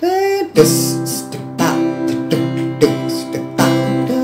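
Acoustic guitar strummed slowly in a half-time pattern, about five chord strokes left ringing between them, as for a song's final chorus.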